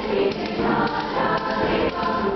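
Girls' choir singing an upbeat song together, with hand claps in time.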